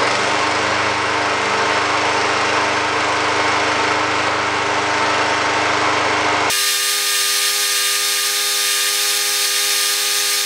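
Tecumseh flathead single-cylinder engine on a walk-behind lawn mower, running steadily just after starting on freshly added used oil. About six and a half seconds in, the sound jumps abruptly to a higher, more even buzz as the running engine is played back at four times speed.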